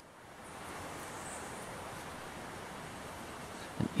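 Faint, steady outdoor background noise with no distinct events: an even hiss of open-air ambience in a garden.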